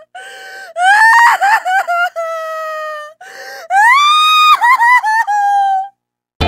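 A high-pitched voice crying and wailing in several drawn-out sobbing cries, with catches and short breaks between them. The cry a little after halfway rises sharply in pitch and is held before it falls away.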